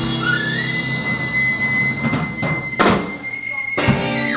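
Live blues band with saxophone, electric guitars, bass and drums ending a song: one high note rises in and is held for about three seconds over a few closing drum and cymbal hits, with a last hit near the end.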